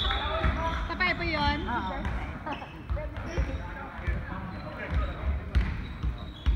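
Basketball bouncing on an indoor court floor in a sports hall, with irregular low thumps and one sharper hit near the end, under voices of players and spectators.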